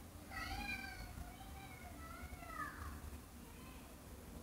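Two high-pitched, wavering cries in the first three seconds, the second dipping in pitch as it ends, over low room rumble.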